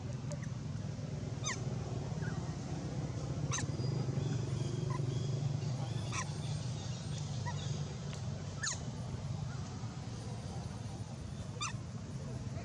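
About five short, high chirping calls, each falling steeply in pitch, spaced two to three seconds apart, over a steady low hum.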